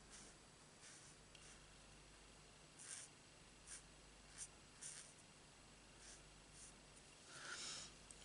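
Faint short strokes of a Stampin' Blends alcohol marker colouring on cardstock, a few scattered scratches with a slightly longer rub near the end.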